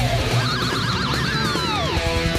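Electric guitar lead in a heavy-metal style music track: a single note rises, is shaken with wide, fast vibrato, then drops steeply in pitch near the end.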